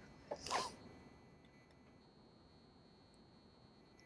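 Near silence: room tone, with a short faint sound about half a second in.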